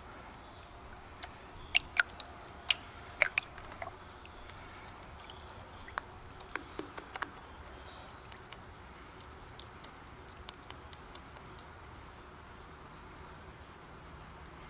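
Water dripping and splashing as a plastic gold pan is dipped and swirled in a metal tub of water to wash black sand off the concentrate. Scattered sharp drips and small splashes, most of them in the first few seconds and again a little later, then sparser.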